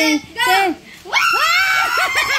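Women's excited voices calling out, then about a second in a loud, high-pitched shriek that rises and holds as the group drops to the floor in a party game. Laughing starts near the end.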